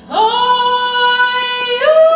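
A woman singing, entering just after the start on one long held note, then stepping up to a higher held note near the end.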